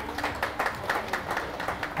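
A small group applauding: many hand claps in a steady run, well below the level of the speech around it.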